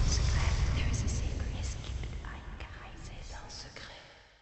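Soft whispering voices over a low music bed, the whole fading steadily away toward the end.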